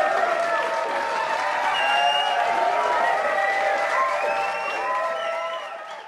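Crowd applauding and cheering, many voices calling out at once over the clapping; it fades out near the end.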